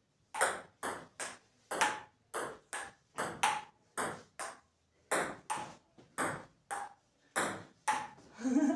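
Table tennis rally: a ping-pong ball clicking back and forth between paddles and the table, about two sharp hits a second, often in close pairs of bounce and stroke, kept going without a break.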